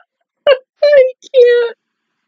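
A woman laughing in three high-pitched vocal bursts, the last two drawn out, ending shortly before the end.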